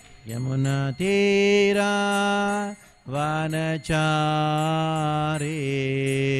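A man chanting a Vaishnava devotional prayer in long, drawn-out sung notes, two sustained phrases with a short break about three seconds in. A steady light jingling beat of small hand cymbals (kartals) keeps time.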